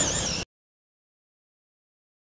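A brief, wavering high-pitched whine from a Traxxas Mudboss radio-controlled truck's electric motor, cut off suddenly about half a second in. The rest is dead silence.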